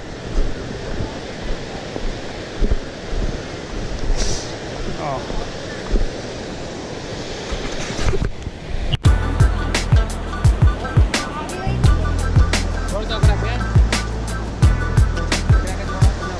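A steady outdoor rushing noise with light scattered ticks. About nine seconds in, it gives way to background music with a steady beat and deep bass.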